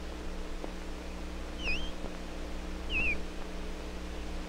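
Two short high squeaks, each dipping and rising in pitch, from the glass thistle tube on the skin of the forearm as the vacuum suction lets go, over a steady low hum.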